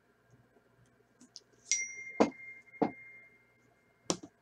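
A single bright ding that rings on with a clear steady tone for about two seconds, with two knocks close together after it and another knock at the very end.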